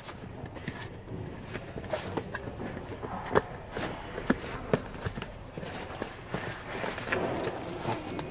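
Plastic bag wrapping and cardboard parts boxes being handled: crinkling and rustling with scattered short taps and scrapes, a few sharper clicks in the middle, as a box is unwrapped and opened.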